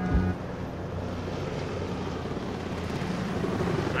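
Police helicopter overhead: a steady rotor and engine noise that grows slowly louder.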